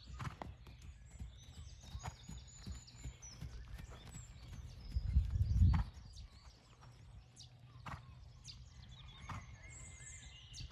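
Ridden horse's hoofbeats on a sand arena surface as it trots and canters, with birds chirping in the background. A brief low rumble about five seconds in is the loudest sound.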